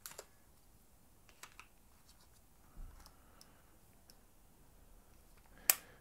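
Faint clicks and ticks of a CFexpress memory card being handled and seated in a Nikon Z9's card slot, then one sharp click near the end as the card slot door is shut.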